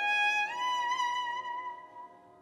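Tenor saxophone holding a long final note over a sustained chord from the band, the note stepping up in pitch about half a second in and then fading away near the end as the tune closes.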